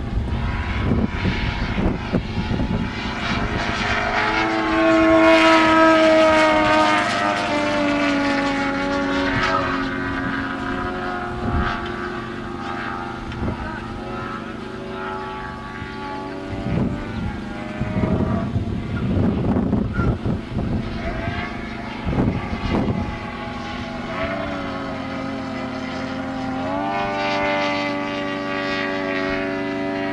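Desert Aircraft DA170 twin-cylinder two-stroke petrol engine driving the propeller of a 40% Krill Yak 55 model aerobatic plane in flight. The note is loudest and highest about five seconds in, falls in pitch over the next few seconds, runs lower through the middle, and rises again near the end as power comes back on.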